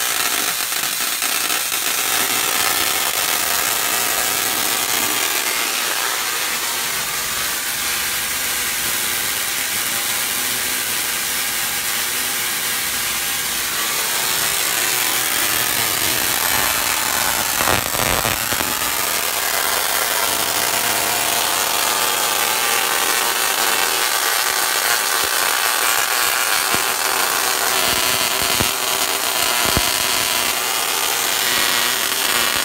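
Homemade spark-gap Tesla coil with a salt-water capacitor and water top load running continuously, its spark discharge giving a steady harsh buzzing noise, with a brief sharper burst a little past the middle. Sparks arc from the top rod to a rod held near it.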